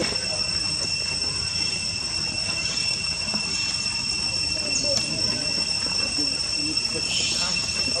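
Steady high-pitched insect drone, holding two even tones, with faint distant voices underneath.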